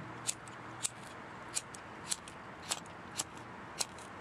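A series of light, sharp ticks, roughly two a second and not quite evenly spaced, over a faint steady hiss.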